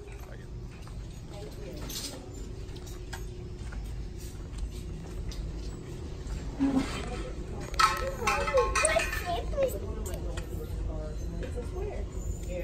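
Shop background with a steady low hum and indistinct voices. The voices come closer and louder for a couple of seconds about eight seconds in.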